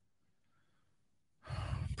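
Near silence, then about a second and a half in a man's audible breath as he draws air before speaking again.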